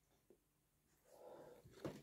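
Mostly near silence. About a second in comes a faint breathy sound, then two soft knocks near the end as the phone camera is handled and moved.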